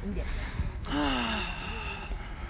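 A person's voice letting out one long, breathy vocal sound that falls in pitch, starting a little under a second in and lasting about a second, an upset groan rather than words.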